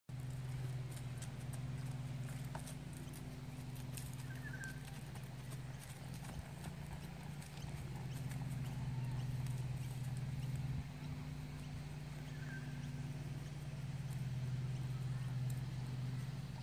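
Horse cantering on grass, its hoofbeats coming as scattered soft thuds. A steady low hum runs underneath and is the loudest sound, and a bird chirps briefly twice.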